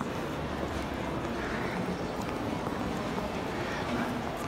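Shopping-mall ambience: a steady background hum with a faint murmur of distant voices in a large indoor hall.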